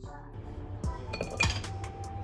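Light clinks and knocks of kitchen utensils, with a few sharp ringing clinks just past halfway, over background music with a steady beat.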